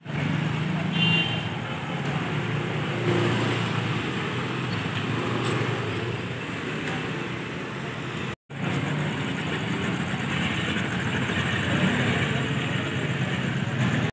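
Street traffic: motorcycle and car engines running and passing at close range. The sound cuts out for a moment about eight seconds in.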